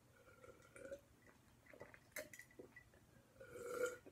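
A person drinking iced coffee in gulps and swallows, faint, with a sharp click about two seconds in and a louder throaty gulp near the end.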